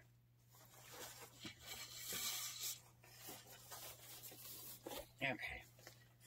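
Fabric ribbon rustling and crinkling as hands gather and press it onto the wooden dowels of a bow maker, loudest about two seconds in.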